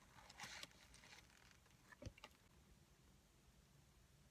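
Near silence: quiet room tone, with faint chewing as a bite is taken near the start and a couple of soft clicks about halfway through.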